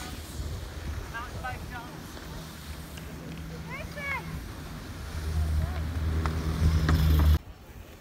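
Chairlift running: a steady low mechanical hum and rumble, with wind on the phone's microphone. It grows louder about five seconds in, cuts off suddenly near the end, and faint distant voices come through.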